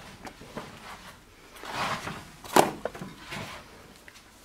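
Handling noise as the handheld camera is moved about: a soft rustle swelling about two seconds in, then a sharp knock, the loudest sound, with a smaller knock just after.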